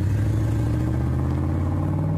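Truck engine running steadily, a low, even drone.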